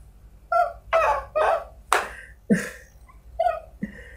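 A man laughing in short breathy bursts, about seven of them over three seconds.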